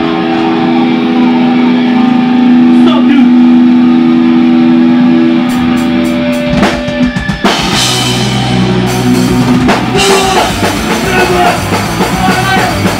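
Live hardcore punk band: electric guitar holding a ringing chord for the first several seconds, with a few drum hits near its end. About seven and a half seconds in, drums and the full band come in and play fast.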